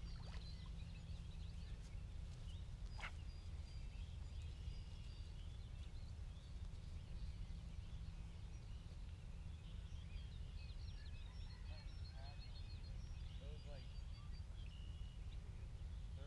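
Birds chirping and calling, faint and scattered throughout, over a steady low rumble, with one sharp click about three seconds in.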